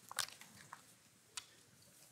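Sheets of paper being handled on a lectern: a few short, sharp clicks and crackles over faint room tone.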